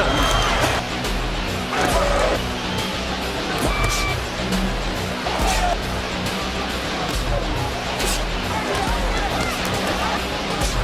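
Background music with a steady low beat, mixed with indistinct voices and occasional sharp hits.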